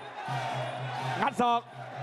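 Traditional Muay Thai ring music (sarama): drums beating steadily under a faint wavering pipe melody. A brief burst of Thai commentary comes about a second in.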